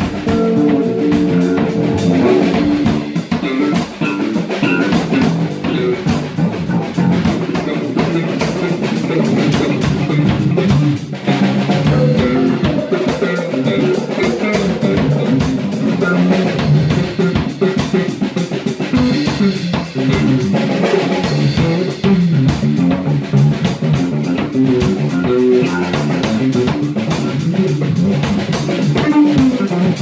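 A live instrumental rock jam: a Gretsch drum kit, electric guitar and electric bass guitar playing together loudly and without a break.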